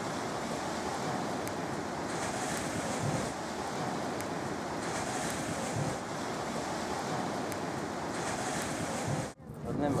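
Surf washing on the shore with wind buffeting the microphone, a steady rushing noise that swells every few seconds. It cuts off abruptly near the end and a voice follows.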